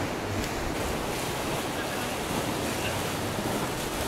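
Whitewater river rapids rushing steadily.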